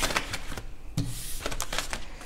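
Tarot cards being gathered up off a table and stacked: a run of light, irregular clicks and taps, with a firmer tap at the start and about a second in.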